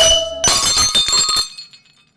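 A wine glass dropped onto a tile floor and shattering: a short ringing note, then a crash about half a second in, with the shards tinkling and dying away by about a second and a half.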